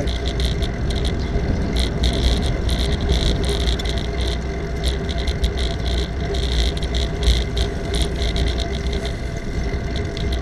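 Wind and road rumble on the microphone of a camera riding on a moving bicycle, with frequent small rattling clicks.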